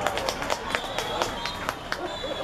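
Scattered hand claps from a few people, about ten sharp, irregular claps over two seconds, with light crowd noise behind them.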